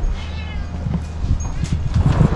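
A house cat meowing once, a short call that bends in pitch, near the start, over a steady low rumble.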